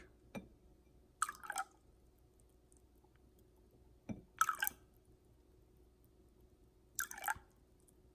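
Water from a filter pitcher pouring into a drinking glass in three short spurts, each under a second, with quiet between them and no dripping once each pour stops.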